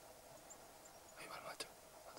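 Near silence, with a brief faint whisper about a second and a half in.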